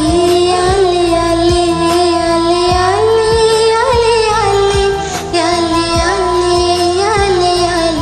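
A woman singing long, held notes that bend slightly in pitch, over a karaoke backing track with a steady beat.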